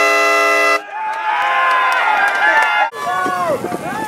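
A steady horn blast ending about a second in, followed by a jumble of people's voices and shouts.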